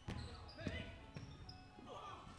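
Faint basketball game sounds in a gym: a ball bouncing on the hardwood floor, with a few short high shoe squeaks.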